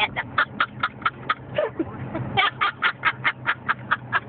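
A woman laughing hard in two long runs of quick breathy pulses, about five a second, with a short break about halfway through. A steady low car-cabin hum runs underneath.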